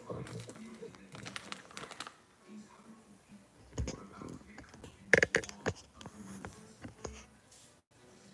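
Scattered light clicks, taps and knocks of handling on a kitchen countertop, with a dull thump about four seconds in and a louder run of sharp clicks about five seconds in.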